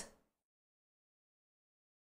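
Near silence: a voice cuts off in the first instant, then dead silence.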